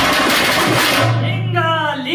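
Veeragase drums, beaten with sticks, break in with a sudden loud burst of clashing percussion between sung verses. The burst dies down after about a second and a half.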